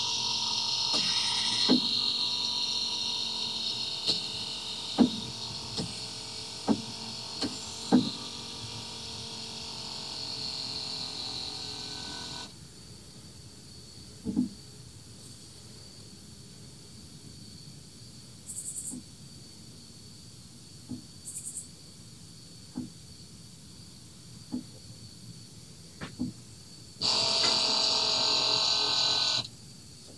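Toyota Prius brake actuator's electric pump motor running with a steady high whine for about twelve seconds, then stopping. It runs again for a couple of seconds near the end, with scattered sharp clicks in between. This is the ABS actuator at work during its linear valve offset calibration after replacement.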